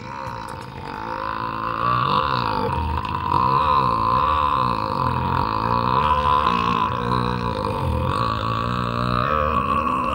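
A man's single long, drawn-out burp, its pitch wavering as it goes, growing louder over the first couple of seconds.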